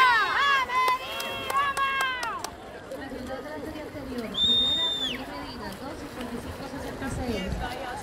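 High-pitched shouts of encouragement from spectators for the first two seconds or so, then lower background chatter. About halfway through there is a short, steady, high tone like a whistle.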